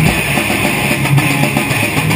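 Thrash metal band playing live: distorted electric guitars, bass guitar and a Tama drum kit, loud and continuous.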